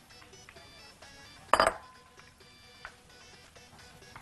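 Quiet background music, with one sharp clink of a glass bowl about a second and a half in that rings on briefly as it fades.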